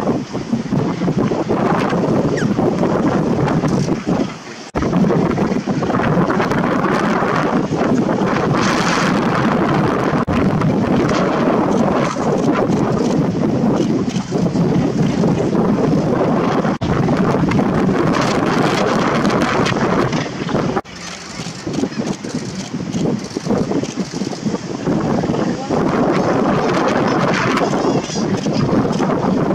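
Steady wind buffeting the microphone on an exposed sea cliff, briefly dropping away about four seconds in and again around twenty-one seconds.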